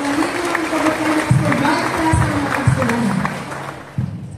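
An audience clapping, mixed with voices, fading out near the end.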